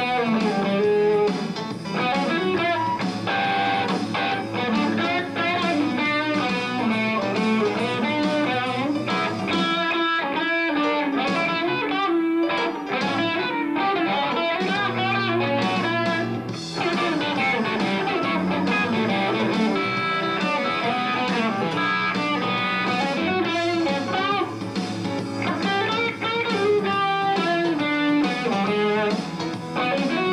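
Stratocaster-style electric guitar played through an amplifier: a fast blues instrumental of quick single-note runs and bends, thinning briefly about a third of the way through before the runs pick up again.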